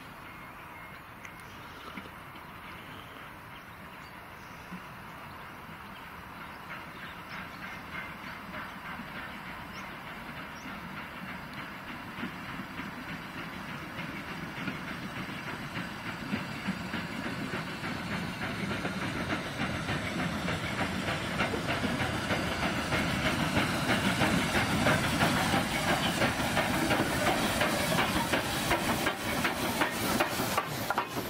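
Somerset & Dorset Joint Railway 7F 2-8-0 steam locomotive No. 53808 hauling coaches toward the platform: a steady hiss of steam and rumble of the train growing steadily louder as it draws near, with a fast ticking of its running gear in the last few seconds as it comes alongside.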